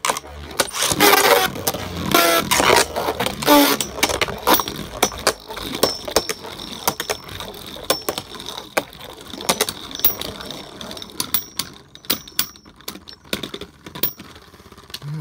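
Two Beyblade Burst spinning tops battling in a plastic stadium: a rapid clatter of clicks and knocks as they clash with each other and hit the stadium wall. The clashes are loudest in the first few seconds and thin out to scattered clicks over a faint high whir later on.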